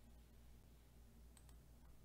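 Near silence: faint room tone with a few faint computer mouse clicks, two close together about one and a half seconds in.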